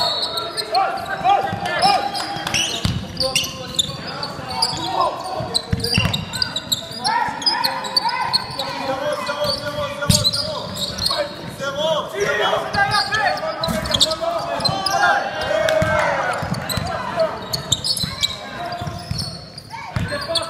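Indoor basketball game: a ball bouncing on a hardwood court among sharp knocks, with players' and spectators' voices calling out, echoing in a large sports hall.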